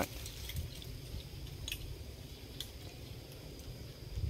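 Quiet outdoor background: a low rumble with a few faint clicks and a faint steady high tone; no chainsaw is running.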